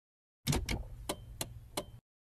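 VHS cassette being pushed into a VCR: five mechanical clicks at uneven spacing over a low hum as the loading mechanism takes the tape, starting about half a second in.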